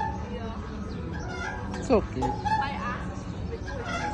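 Indistinct voices, with one loud cry that slides sharply down in pitch about two seconds in.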